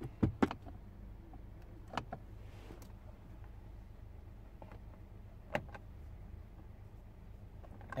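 A few sharp clicks and soft knocks from a Toyota Mark X's centre-console sliding covers and trim panels being slid and pushed by hand, with a faint slide sound between them. A faint steady low hum runs underneath.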